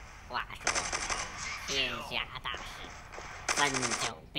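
Mobile shooter game's sound effects from a tablet: two bursts of rapid machine-gun fire, about a second in and again near the end.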